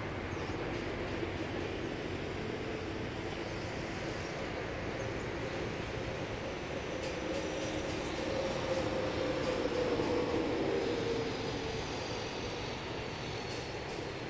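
A motor's engine drones steadily, growing louder to a peak about eight to eleven seconds in and then fading as it passes by.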